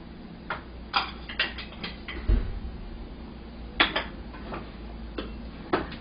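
Light clinks and knocks of small ceramic tableware being handled and set down on a cutting board, in scattered single taps and a quick cluster about a second and a half in, with one duller thump a little over two seconds in.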